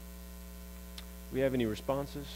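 Steady electrical mains hum, with a single faint click about a second in.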